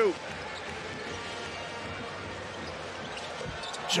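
Steady crowd noise in a basketball arena, with a basketball being dribbled on the hardwood court during live play.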